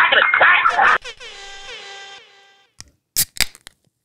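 A short lo-fi music jingle ends about a second in on a held note that fades out before the three-second mark. A few sharp clicks follow.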